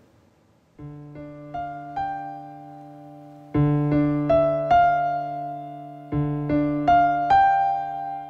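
Soundtrack piano music: after a short silence, a held low chord with a few higher notes struck over it, stepping upward. The phrase comes three times, louder the second and third time, and dies away near the end.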